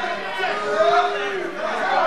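Spectators' voices chattering over one another in a hall, with one voice held longer about half a second in.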